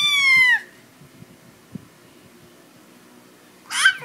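Infant's high-pitched squeal, falling in pitch and stopping about half a second in, then a second short squeal near the end.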